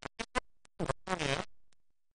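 A man's voice making a few short, mumbled, wordless sounds that cut in and out with dead silence between them. A longer murmur falls in pitch about a second in.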